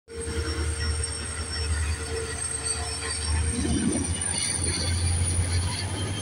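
Indian Railways train rolling past, a continuous low rumble with a thin, high, steady tone above it.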